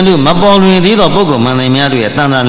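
A Buddhist monk's voice delivering a dhamma talk in a drawn-out, chant-like intonation, holding each pitch for a long moment and stepping down in pitch about halfway through.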